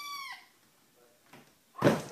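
A kitten meowing: a high mew that rises and falls in pitch and ends about a third of a second in. After a near-quiet pause, a sudden loud noise comes near the end.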